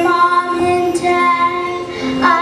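Children singing a song in held notes over an instrumental accompaniment.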